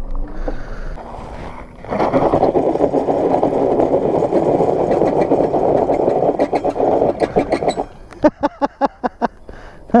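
Small mini bike revving hard with its rear wheel spinning in loose gravel, a dense churning noise from about two seconds in that drops away near eight seconds. Short bursts of laughter follow near the end.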